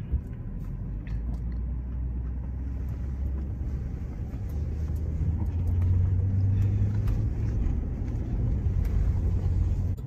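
A full-size truck's engine and road noise heard from inside the cabin as it pulls away and gathers speed: a low drone that rises in pitch and gets louder about halfway through, then holds steady.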